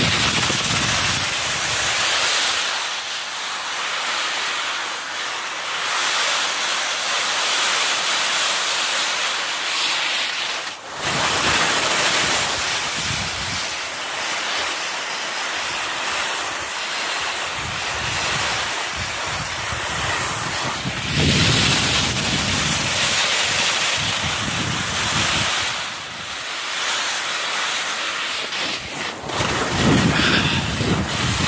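Skis hissing and scraping over wind-rippled snow on a fast downhill run, mixed with wind rushing over the microphone. The noise is continuous and briefly drops about eleven seconds in.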